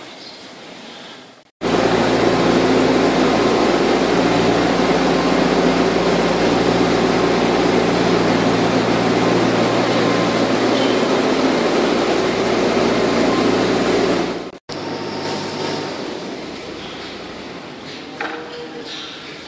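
Loud, steady machine noise with a low droning hum, like a running engine or motor; it starts and stops abruptly and lasts about thirteen seconds, with quieter barn sound either side.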